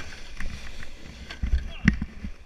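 Wind rumbling on a moving action camera's microphone, with scattered knocks and a heavy thump near the end.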